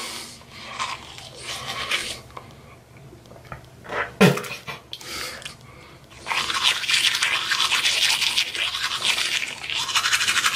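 A manual toothbrush scrubbing wet through toothpaste foam on the teeth and gums. The strokes are soft and broken up at first, then fast and steady from about six seconds in.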